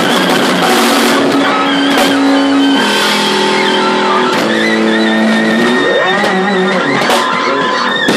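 Live blues band playing an instrumental passage: fretless electric bass, electric keyboards, drum kit and alto saxophone. Long held notes, with a stretch of bending, gliding pitches about six seconds in.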